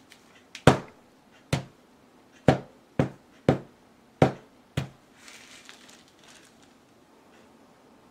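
Rubber mallet striking wet poured acrylic paint on a canvas panel lying on a table: about seven sharp thuds over some four seconds, the blows of a mallet smash bursting the paint outward. A soft rustle follows.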